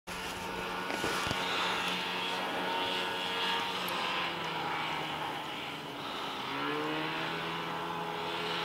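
Snowmobile engine running steadily, then rising in pitch about six and a half seconds in as it revs up.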